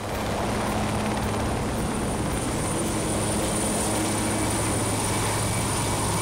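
Military helicopter running on a ship's deck, its turbine engines and turning main rotor giving a steady low drone with a thin, high, steady whine above it.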